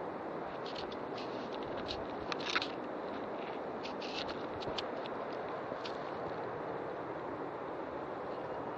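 Footsteps and rustling through dry leaf litter and undergrowth, with scattered crackles of twigs and leaves, the loudest cluster about two and a half seconds in, over a steady background hiss.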